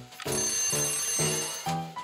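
Alarm clock bell ringing for about a second and a half over background music.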